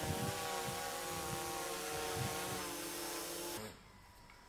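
Autel EVO II Dual 640T V3 quadcopter's propellers humming in flight, a steady multi-toned drone whose pitch wavers slightly; it cuts off abruptly shortly before the end.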